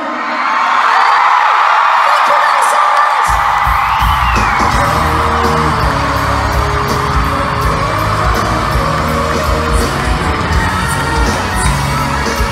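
Large arena crowd cheering and screaming as a song ends. About three seconds in, loud music with a heavy bass beat starts under the cheering.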